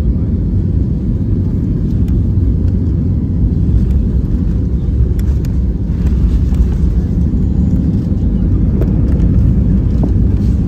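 Steady low rumble inside the cabin of an Airbus A321 taxiing on the ground, with a few faint ticks.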